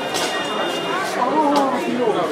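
Several people talking at once in the street, voices overlapping and unintelligible.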